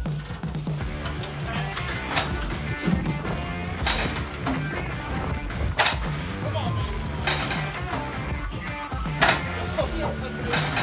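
Background music with a steady beat, with a sharp hit roughly every two seconds.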